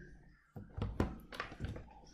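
A quick, uneven run of about six knocks and clicks, like something handled or tapped on a desk close to the microphone.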